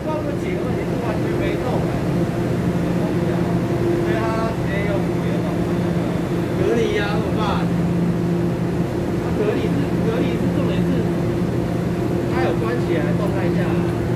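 Steady electrical hum from a stationary TEMU2000 Puyuma tilting EMU standing at the platform, with voices in the background at times.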